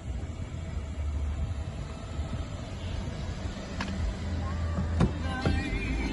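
Low rumble of wind and handling noise on a handheld microphone, with sharp clicks about four and five seconds in as the car door is opened and shut. Music begins just before the end.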